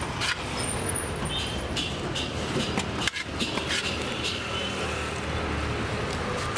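Steady road-traffic rumble, with a few short light clicks and taps now and then.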